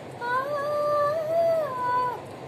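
A woman singing unaccompanied, holding one long, high note that drifts slightly upward and falls away near the end.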